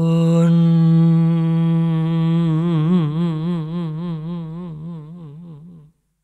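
A low male voice holding the song's final long note on its own, sliding up into the pitch and then wavering in a vibrato that grows wider from about halfway, fading out and stopping near the end.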